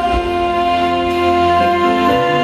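Live concert music from an on-stage band and orchestra: a slow passage of long, sustained held notes.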